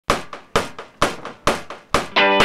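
Drum beat opening a rock song: strong hits a little more than twice a second with lighter hits between, each dying away quickly.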